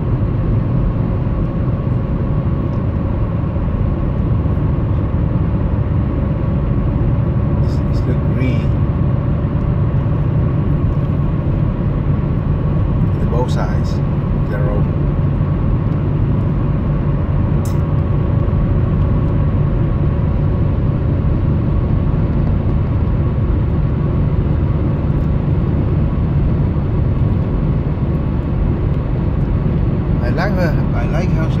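Car driving at steady road speed, heard from inside the cabin: a continuous rumble of tyre and engine noise with a faint steady hum, and a few light ticks.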